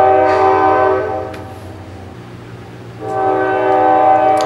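Train horn sounding two long blasts of several tones at once: the first fades out about a second and a half in, and the second starts about three seconds in.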